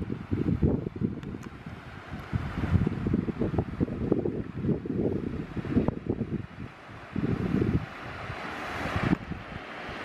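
Gusty wind blowing across the camera microphone, a low, uneven noise that swells and drops.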